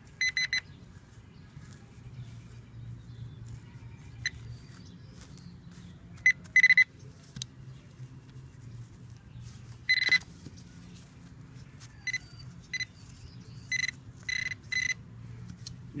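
Handheld metal-detecting pinpointer beeping as it is probed through loose dug soil, signalling coins close to its tip. Short high beeps of a single pitch come irregularly, about a dozen in all, several in quick pairs or threes, with a longer beep a little past the middle.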